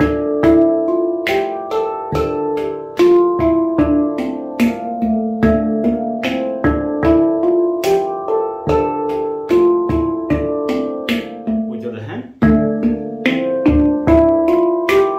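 Steel handpan played in a steady, repeating groove by both hands: a quick train of struck notes that ring on, with a brief break about twelve seconds in before the groove starts again.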